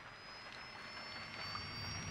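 Car pulling away, as a drama sound effect: a faint hum that swells gradually, with a thin high whine rising slightly in pitch as it gathers speed.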